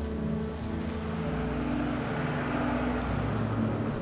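Sustained notes of a dramatic film score, overlaid by a rush of noise that swells to a peak about halfway through and then fades.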